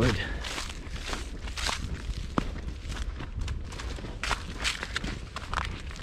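Footsteps crunching through dry fallen leaves on a forest slope, about two to three steps a second, with one sharper click a little over two seconds in.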